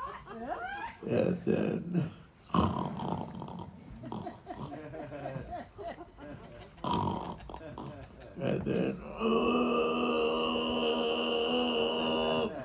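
A voice making wordless sounds: sliding whoops and burp-like grunts in separate bursts, then one long held note over the last few seconds.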